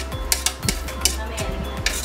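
A spoon tapping and scraping against a plate in quick, irregular clicks as chopped ham is pushed off it onto pasta in a wok.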